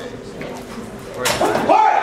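A single sharp crack of a longsword strike about a second in, followed at once by a man's loud shout.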